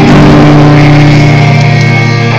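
Guitar chord held and ringing steadily at high level, with a change of notes near the end.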